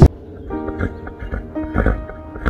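Quiet background music with a horse snuffling close to the microphone as it noses at a person's arm, a couple of louder breaths about a second in and near the end.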